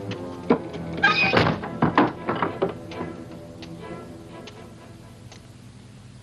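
A heavy wooden door is shut with a loud thunk about a second in, followed by a few lighter knocks over the next two seconds. Film score music plays underneath and fades away after about three seconds.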